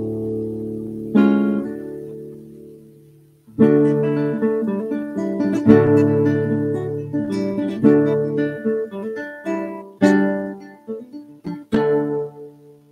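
Classical nylon-string guitar played solo. A chord rings and dies away, a second chord about a second in is left to fade, and then from about three and a half seconds a lively run of plucked notes and chords follows, with a strong chord about ten seconds in.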